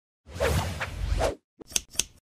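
Logo-reveal sound effect: a whoosh lasting about a second with a low rumble under it, then, after a short gap, two quick sharp hits near the end.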